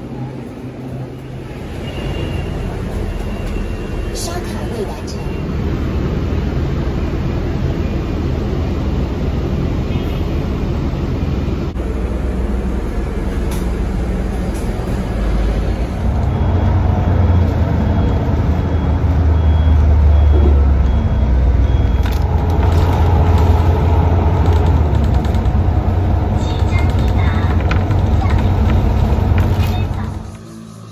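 City bus riding: steady engine and road rumble, heavier in the second half, with indistinct voices and a short repeating electronic beep around the middle.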